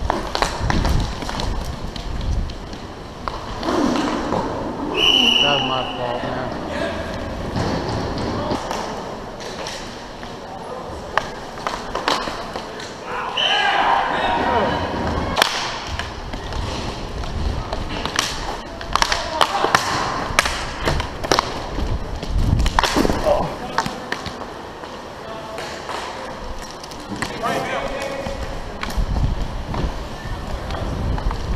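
Roller hockey play heard close up: sticks and puck clacking in many sharp knocks over the rink noise, with players shouting now and then. A referee's whistle blows once, briefly, about five seconds in.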